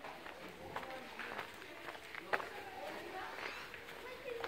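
Footsteps on a cobbled street, a few sharp irregular clicks, with indistinct voices in the background.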